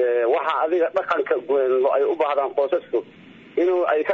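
Speech: a single voice talking, with a short pause near the end.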